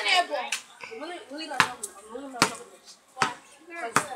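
Basketball dribbled on a concrete patio: about five sharp bounces, a little under a second apart.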